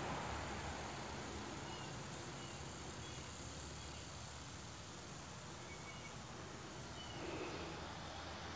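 Faint steady outdoor background noise with insects, and a few brief high chirps scattered through it.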